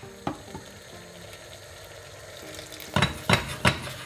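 Arborio rice simmering in freshly added hot stock in a stainless steel pot, a faint steady sizzle. About three seconds in, three sharp clinks of metal against the pot.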